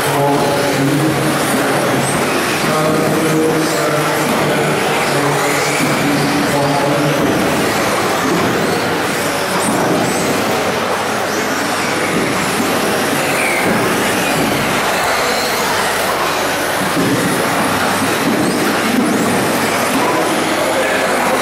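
1/10-scale electric 2WD off-road buggies racing on an indoor carpet track: motors whining, rising and falling in pitch as they brake and accelerate, over a steady loud din of the hall.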